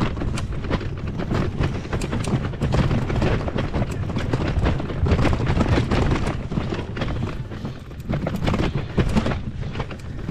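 Touring bicycle rolling over a path of uneven stone slabs, rattling and knocking in quick, irregular clicks, over a constant low rumble of wind buffeting the microphone.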